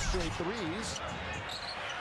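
Basketball being dribbled on a hardwood court over steady arena crowd noise, with a faint voice under it.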